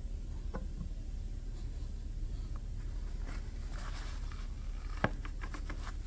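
Hand-fitting of a charge-pump cover into a Danfoss Series 90 hydraulic pump housing: faint metal scraping and rustling, then a single sharp click about five seconds in as the part locks into place, over a low steady hum.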